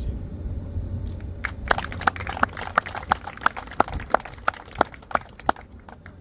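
A small audience clapping sparsely after a speech: a dozen or so scattered, uneven claps from about a second and a half in until shortly before the end, over a steady low rumble.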